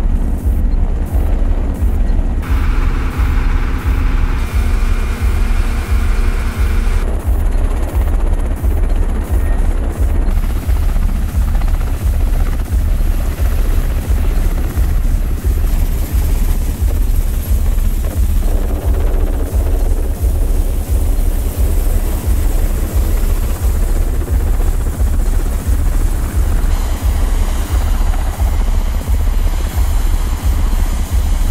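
Helicopter running, its rotors beating in a steady low rhythm.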